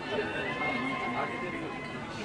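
Coffee shop ambience: indistinct conversation among customers over quiet background music, with no clear clinks or knocks.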